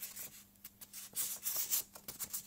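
A circle of filter paper being folded and creased by hand: soft paper rubbing and rustling, denser in the second half.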